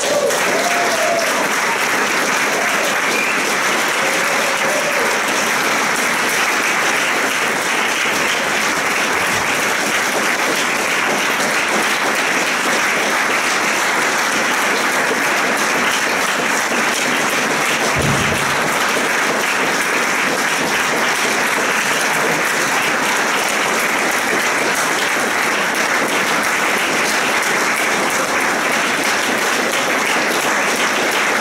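Audience applauding, steady and unbroken throughout, with one brief low thump about eighteen seconds in.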